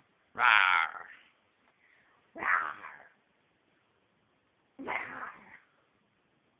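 A toddler making three short, high-pitched wordless calls, about two seconds apart, with quiet between them.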